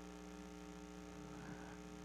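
Faint, steady electrical mains hum from the sound system in a pause between speech.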